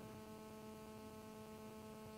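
Near silence apart from a faint, steady electrical hum made of several fixed tones.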